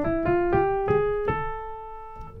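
Piano playing a single line stepping upward note by note through the C major 6th diminished scale, from E up through A flat to A, about five notes, the last held and left to ring and fade.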